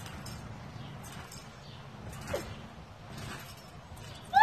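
Trampoline springs and mat creaking faintly with each bounce, about once a second, with a brief squeak about two seconds in, over steady low background noise.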